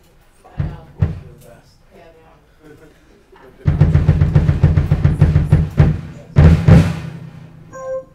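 Mapex drum kit being tried out: two single strikes, then a fast roll lasting about two seconds and a second short burst.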